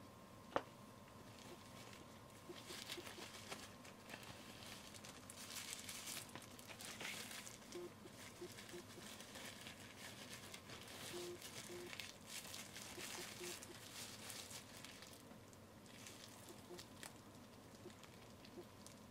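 A thin disposable glove being pulled on and worked over the hand, giving a soft, irregular crinkling and rubbing that is busiest in the middle and thins out near the end. There is a single light knock just after the start.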